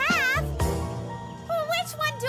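Cartoon background music with a high, warbling voice-like call for the first half second and a shorter, lower wavering call near the end.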